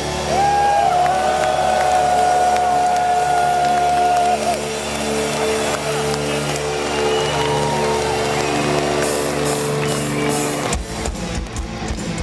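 Live heavy metal band holding one sustained chord, with a long steady high note held over it for the first four seconds or so. Near the end the held chord breaks into a quick run of drum hits.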